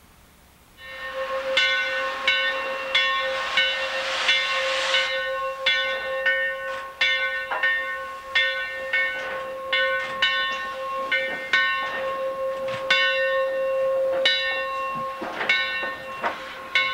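Steam locomotive bell of 2-8-0 No. 17 starting up about a second in and ringing steadily, a little under two strokes a second. A burst of steam hiss runs alongside it a few seconds in.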